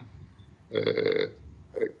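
Speech only: a man's drawn-out hesitation "eh", about half a second long, partway into a brief pause in his talk. Near the end he starts his next word.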